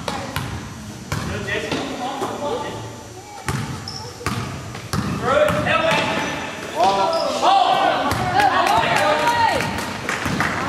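Basketball bouncing on a hardwood gym floor, sharp repeated bounces. About halfway through, spectators begin shouting and cheering, and they are loudest near the end.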